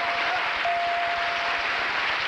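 Studio audience applauding, with a thin steady tone sounding through it, briefly at first and then for about a second.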